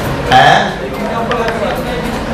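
Voices in a classroom, with one short, loud vocal sound about half a second in, and faint ticks of chalk on a blackboard as words are written.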